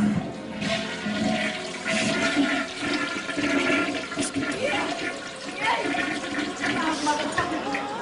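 Steady rushing water, with faint voices underneath near the end.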